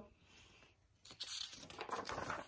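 Paper rustling as a picture book's page is turned, starting about a second in after a near-silent pause.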